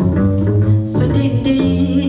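Live jazz combo playing, led by a plucked upright double bass. Higher sustained tones join the bass from about a second in.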